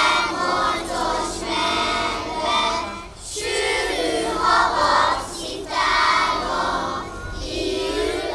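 A group of young children singing a Christmas song together, in phrases with a short break for breath about three seconds in.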